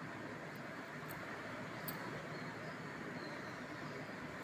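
Thekua (wheat-dough sweets) deep-frying in oil in a kadhai over low heat: a soft, steady sizzle with a few faint crackles.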